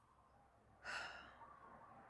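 Near silence broken about a second in by one audible breath from a woman, a short breathy sound that fades away.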